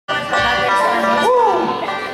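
Bluegrass string band of banjo, mandolin, acoustic guitar and upright bass letting a held chord ring out at the end of a fast tune. A short voice rises and falls over it about a second in.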